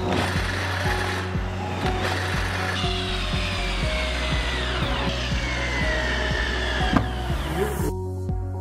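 Electric drill boring through a steel frame tube and then driving a screw into the wooden tabletop, its motor whine falling slowly in pitch under load through the second half. Background music plays underneath.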